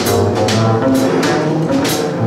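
Live jazz trio playing: upright string bass notes, piano and drum kit, with cymbal strokes about every half second.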